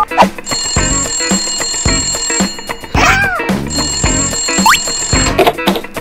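Telephone ringing in two bursts, the first about two seconds long and the second about a second long, over background music. A short sliding tone sounds between the rings.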